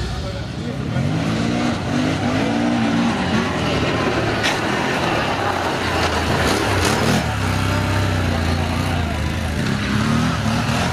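Can-Am Renegade 1000 ATV's V-twin engine revving in several rising blips, then pulling at a steady pitch.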